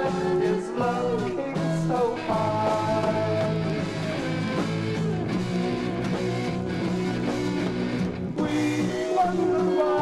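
A late-1960s psychedelic garage rock record playing: a full band with sustained and sliding melody lines over a steady low end.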